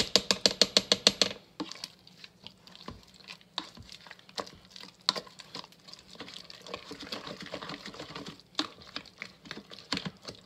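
A plastic potato masher mashing cooked potatoes in a non-stick multi-cooker pot, with soft squelching and irregular light knocks of the masher on the pot. In the first second and a half there is a quick, even run of loud sharp clicks, about eight a second.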